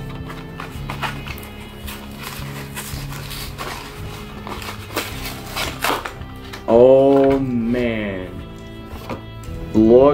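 A plastic blister pack crackling and clicking as it is pried off its cardboard card, over steady background music. A loud drawn-out vocal sound, its pitch dipping and rising, comes about seven seconds in.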